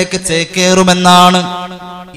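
A man's voice chanting on a long, steady held pitch, the intoned delivery of a sermon. After about a second and a half the pitch drops slightly and the voice grows quieter.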